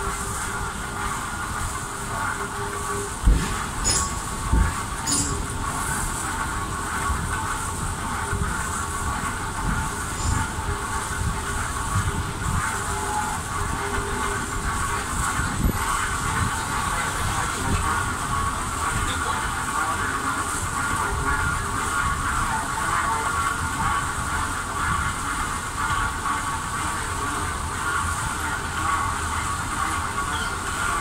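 Moving walkway (travelator) running with a steady mechanical rumble and hum, the kind of rolling clatter a rail car makes, with a few sharp knocks about three to five seconds in.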